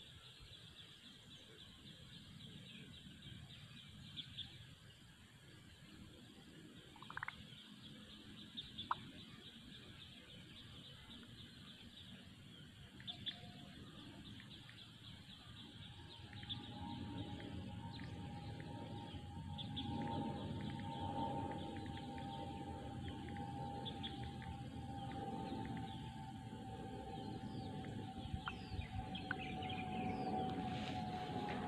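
Faint outdoor ambience: a steady, pulsing high-pitched buzz with a few short bird chirps. About halfway through, a low steady hum with a single held tone joins and the sound grows louder.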